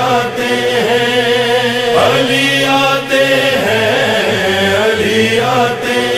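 Voices chanting a slow, sustained melody without words: the vocal backing of an Urdu devotional manqabat.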